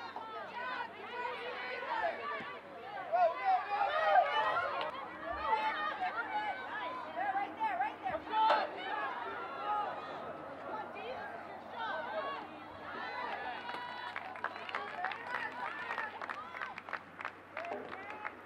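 Indistinct chatter and calls from several voices overlapping around a soccer pitch during play, with a quick run of sharp clicks near the end.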